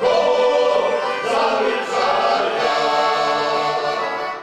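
A group of men singing a folk song together in chorus, in long held notes.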